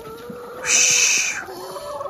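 Hens in a coop, one giving a harsh, hissing squawk of under a second about halfway through, over a faint drawn-out call.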